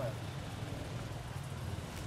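An enduro motorcycle engine idling nearby: a steady low hum with a fast, even pulse.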